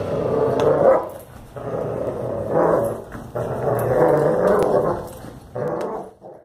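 A young German Shepherd growling as it bites and tugs on a bite pillow, in four long growls, the last one short, near the end.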